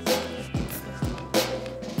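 Upbeat workout background music with a steady drum-kit beat: a bass drum and a snare.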